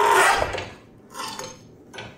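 Eighth-inch steel plate clamped in a bench vise being bent by hand to break open a TIG weld: metal scraping with a ringing creak for the first half second, then a brief, fainter scrape about a second in.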